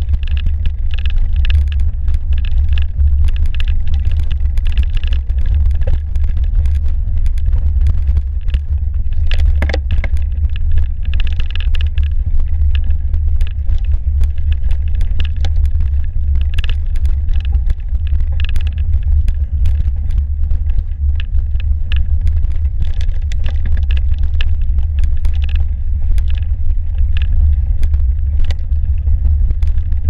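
Mountain bike riding along a snowy trail, heard through a handlebar-mounted camera: a steady low rumble on the microphone with frequent clicks and rattles from the bike and tyre.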